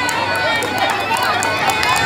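Voices with faint music beneath them, quieter than the loud chanting on either side.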